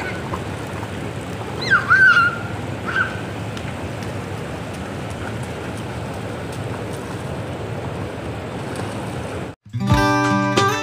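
Steady rush of pool water from small fountain jets and splashing as children wade through shallow water, with a child's short high squeals about two seconds in. Just before the end the sound cuts out and guitar music begins.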